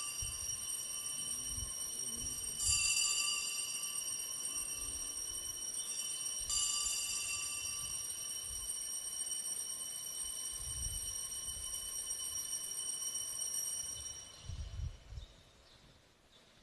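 Altar bells rung at the elevation of the consecrated host, the signal of the consecration. They are already ringing at the start, are struck again about two and a half seconds in and about six and a half seconds in, and the high ringing fades out near the end.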